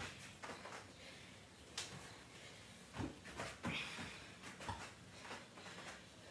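Faint, scattered taps and soft thumps of hands and feet on an exercise mat during plank walkouts, a few sharper taps standing out.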